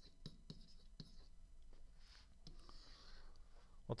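Faint taps and scratches of a stylus writing figures on a tablet surface, a run of short separate strokes.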